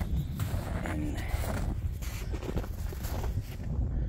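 Wind buffeting the microphone in a steady low rumble, with a few irregular footsteps in snow.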